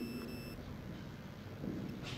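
A short, high electronic beep lasting about half a second, followed by faint room noise.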